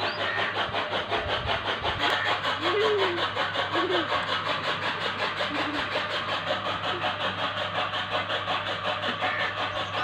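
An engine running steadily with an even, pulsing beat. A few short pitched sounds, a voice or an animal call, stand out about three to four seconds in.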